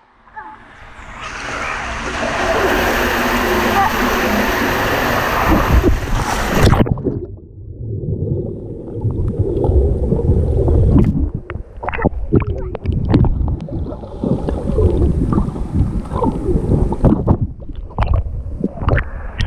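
Water rushing down an enclosed tube water slide, building over the first few seconds and cutting off suddenly with the plunge into the pool about seven seconds in. After that, water sloshes, gurgles and splashes around the microphone, which sits at and under the pool's surface, so the sound is muffled.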